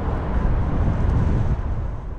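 Low rumbling road and wind noise of a car in motion, swelling to a peak around the middle and easing off near the end.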